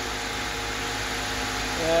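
Car engine idling steadily under the open hood: the turbocharged Vectra 2.0 engine swapped into a Chevrolet Chevette. A man's voice starts near the end.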